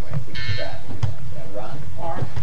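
A toddler's brief wordless babbling over a steady low hum, with a short high-pitched rasp about half a second in.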